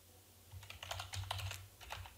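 Computer keyboard typing: a quick, fairly faint run of key clicks starting about half a second in, as a word is typed.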